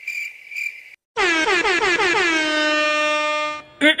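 Comedy sound effects: cricket chirping, a high chirp pulsing about three times a second, for the first second. Then a loud horn-like tone slides down in pitch and holds for about two and a half seconds, ending in a brief cough.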